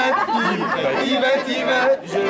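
Several voices talking over one another in a large, echoing hall.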